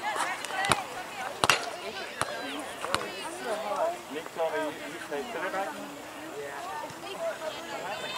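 Indistinct voices of many players and onlookers calling and chattering across an outdoor soccer field, with a few sharp knocks in the first three seconds.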